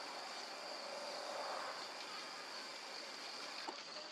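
Faint, steady outdoor background: a high, even insect drone over a soft hiss.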